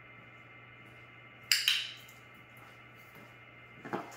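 A sharp metallic clink, struck twice in quick succession about a second and a half in and ringing briefly, then a softer knock near the end, over a steady low hum.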